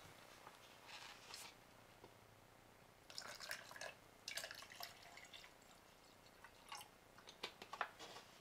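Water poured from a plastic bottle into a stainless steel tumbler holding effervescent vitamin C powder: faint, broken splashes and drips, starting about three seconds in and coming in short spells.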